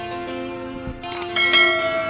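Background music with a bright bell chime about one and a half seconds in: the ding of a subscribe animation's notification bell.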